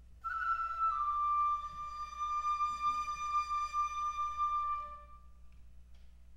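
Dizi (Chinese bamboo flute) playing a slow unaccompanied phrase: a bright note that steps down once just under a second in, then is held long and fades out about five seconds in.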